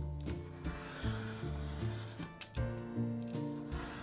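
A craft knife blade scraping as it slices through the edges of folded paper pages, over background music.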